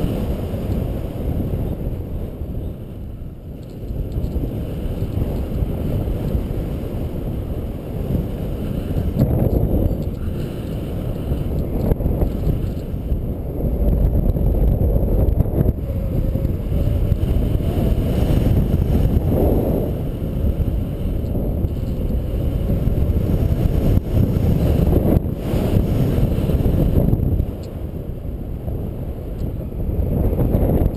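Wind rushing over the microphone during paraglider flight: a loud, low rumbling noise that swells and eases in gusts.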